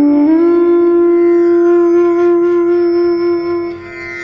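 Instrumental music: a wind instrument slides briefly up into one long steady note, which fades near the end.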